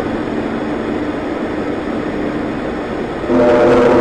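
Steady rushing noise at the rocket launch pad. About three seconds in, a loud horn starts, sounding several steady tones at once, a pre-launch warning signal.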